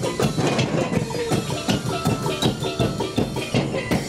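A carnival comparsa's marching percussion band playing live: drums and cymbals keeping a fast, steady beat, with pitched notes from mallet percussion over it.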